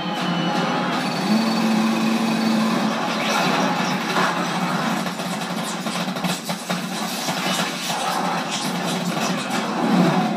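Action film soundtrack playing from a screen, thin and without deep bass: music with a held low note in the first few seconds, then a dense run of crashes and impacts.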